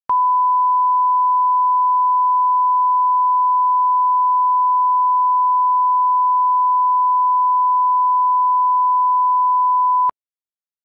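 Broadcast line-up test tone, the standard 1 kHz reference tone that goes with colour bars: one steady pure tone at a single pitch, stopping abruptly at the very end.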